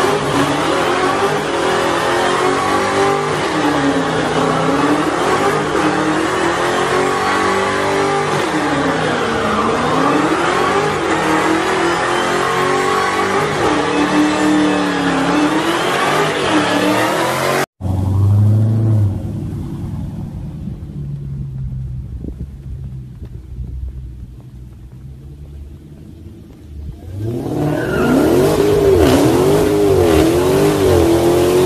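Dodge Charger Hellcat's supercharged V8 revving hard during a burnout, its pitch swinging up and down every few seconds as the rear tyres spin. After a sudden cut about 18 s in the sound drops and fades, then another car's engine revs up near the end.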